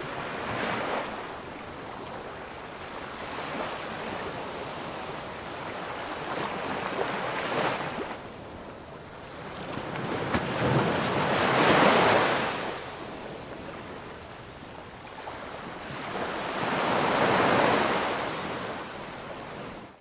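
Small waves washing up a sandy beach, surging in and receding several times, with the loudest surge a little past halfway.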